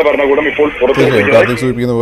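Speech only: a man talking without a break.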